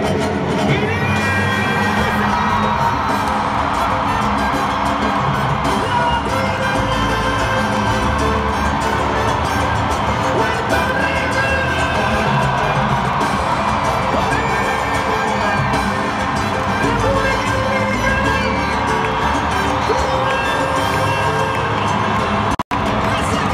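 Live salsa band playing loudly through a concert sound system while a large crowd cheers and shouts.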